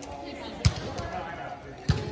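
Two sharp slaps of hands striking a volleyball, a little over a second apart, with people talking faintly in the background.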